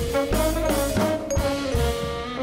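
Live jazz quintet playing: trombone and tenor saxophone lines over upright bass and drum kit, with held horn notes and a walking bass beneath.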